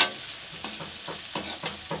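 Chopped onion and spices sizzling in oil in a kadhai, stirred with a metal spatula that scrapes the pan now and then. It opens with one sharp knock.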